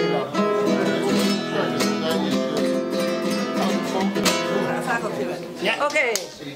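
Nylon-string flamenco guitar played live fingerstyle, a busy run of plucked notes and chords. The playing stops abruptly just before the end, and voices take over.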